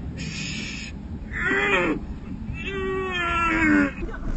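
A man howling like a wolf: a short hiss at the start, then a brief howl and a longer howl that slowly falls in pitch.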